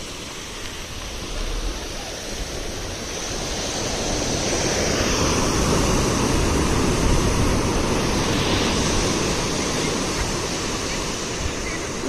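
Sea surf breaking and washing up the shore: a steady rush of water that swells to its loudest in the middle and eases off toward the end.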